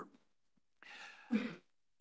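A man's short non-speech vocal sound at a conference microphone: a faint breath about a second in, then a brief louder throat sound.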